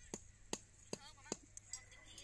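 A machete blade striking down into plants and soil, five short, even chops at about two and a half a second.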